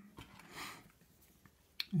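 Faint handling of a small brass padlock as a warded pick is slid into its keyway: a soft rustle about half a second in, then a sharp click near the end.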